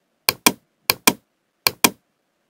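Computer mouse button clicking: three pairs of sharp clicks, evenly spaced, each a quick press-and-release or double click.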